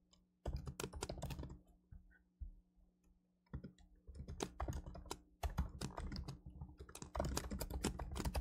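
Typing on a computer keyboard: rapid runs of keystrokes, a pause of about two seconds in the middle, then a longer, denser run of typing.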